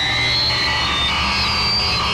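Eerie horror-film soundtrack effect: a steady low drone under high, thin held synthesized tones that shift in pitch.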